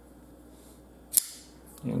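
Gocomma flipper folding knife snapping open on its ball-bearing pivot: one sharp metallic click about a second in as the blade swings out and locks.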